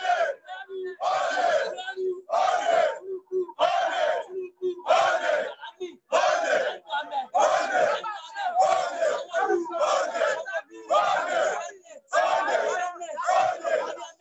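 Protest chant: a man shouting short slogans through a handheld megaphone, a crowd shouting with him, in repeated phrases about one every second to second and a half.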